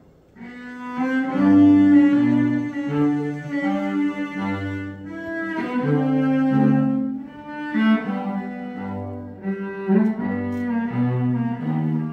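Cello played with the bow: a slow, classical melody begins about half a second in from near silence and carries on as a run of sustained notes, with low bass notes sounding under the higher line.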